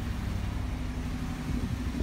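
Idling engine of a 2017 Ford F-250 pickup truck, a steady low hum.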